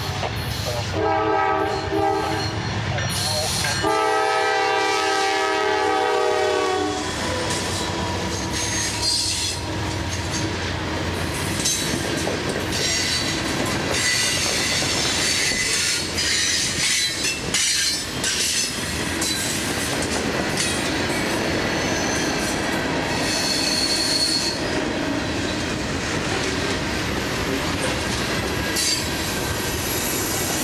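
Norfolk Southern freight train led by two GE Dash 9-44CW diesel locomotives: the lead unit's horn sounds in several blasts, the last a long one that ends about seven seconds in, as the locomotives pass. Then the freight cars roll by with a steady clatter of wheels over rail joints and a few brief, high wheel squeals.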